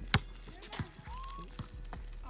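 A basketball dribbled on a concrete court: one sharp bounce just after the start, the loudest sound here, and a softer knock a little under a second later.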